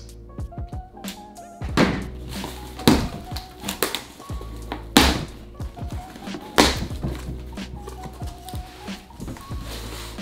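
Background music with a beat over a cardboard box being opened by hand: packing tape and flaps pulled back, with a few sharp knocks from the box.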